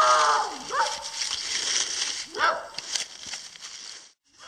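A dog barking, three barks in the first three seconds.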